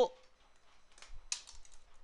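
Light computer keyboard key presses: a few faint clicks, the clearest a little after a second in.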